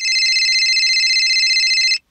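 A telephone ringing: one long electronic ring, a high, rapidly warbling tone that starts and stops abruptly.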